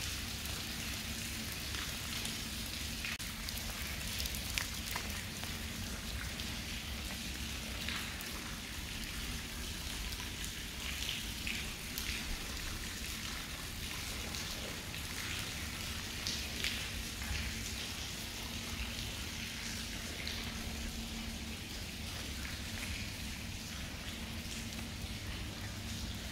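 Water dripping and trickling in a wet brick tunnel: many small drops and splashes over a steady watery hiss, with a faint low hum underneath.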